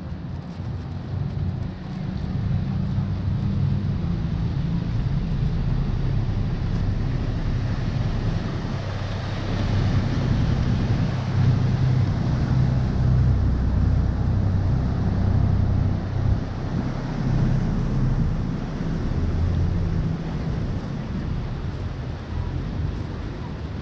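Khlong Saen Saep canal express boat's diesel engine running as the boat passes close by, with the rush of its wake on the water. It builds a couple of seconds in, is loudest around the middle, and eases near the end.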